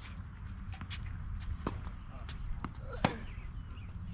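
Tennis balls being struck by racquets and bouncing on a hard court during a rally: a few sharp pops, the loudest about three seconds in, over a steady low rumble.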